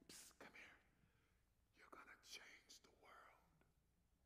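Faint whispered speech: a person whispering a few short phrases into a microphone, in three brief bursts.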